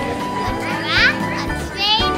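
A child speaking in a high voice over background music.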